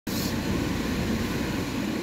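Steady low rumble of a car, heard from inside its cabin.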